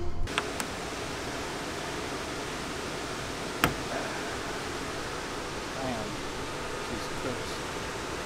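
Steady rushing noise from the shop's air conditioner running. One sharp click comes about three and a half seconds in.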